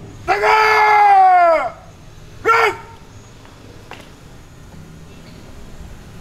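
A man shouting a parade-ground drill command through a loudspeaker system: one long, drawn-out call that drops in pitch at its end, then a short, sharp second call about a second later, the pattern of an Indonesian ceremony command such as 'Tegak… grak!'.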